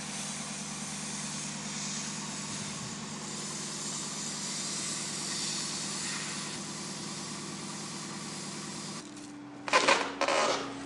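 Excavator's diesel engine running steadily. Near the end the hum stops and a short, loud crunching crash follows.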